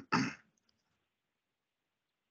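A person clearing their throat: a short rough burst at the very start, then nothing.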